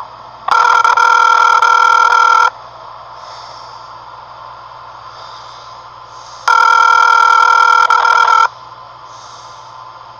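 Telephone ringback tone on a line whose call is being transferred. There are two rings, each about two seconds long, with about four seconds of quiet line hiss between them.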